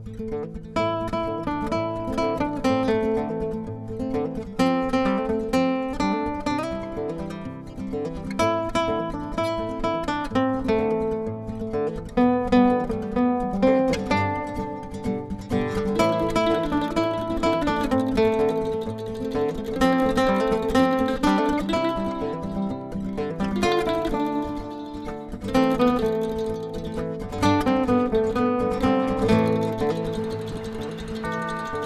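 Background music led by an acoustic guitar, plucked and strummed in a steady run of notes.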